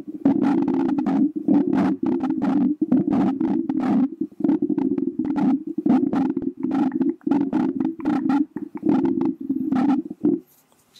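Glass perfume bottle tapped and rubbed by fingernails against the microphone: quick sharp taps several times a second over a steady low rumble of close handling noise.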